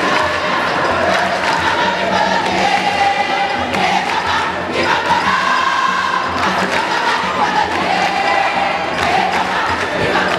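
A large crowd of schoolgirls singing a jama song together, loud and unbroken, many voices carrying one wavering melody.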